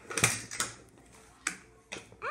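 Toy horses and dolls knocking and clicking against a wooden tabletop as they are handled. The loudest knock comes about a quarter second in, followed by three lighter clicks.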